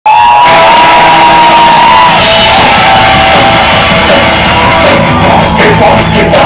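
Live reggae-punk band playing loud, with a voice holding long shouted notes over the band and a cymbal crash about two seconds in.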